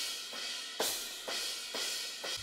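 Programmed drum-sampler cymbals played back in a steady four count, about two hits a second, each with a bright, ringing tail and no kick or bass under them.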